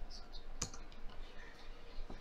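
Laptop keyboard keys clicking as a web address is typed, with one sharper key click a little over half a second in.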